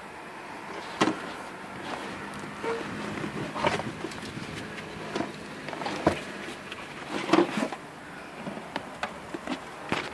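Irregular knocks, clicks and rustles of hands working around a car's rear seat and floor, with a faint steady buzz underneath.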